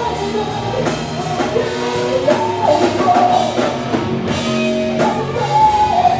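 Live rock band playing: electric guitars, bass and a drum kit, with regular cymbal hits keeping a steady beat.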